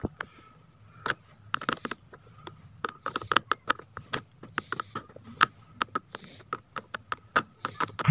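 Screwdriver tip turning in the small screw that holds the steel blade of a plastic pencil sharpener: many irregular small clicks and scrapes of metal on metal, several a second, some louder than others.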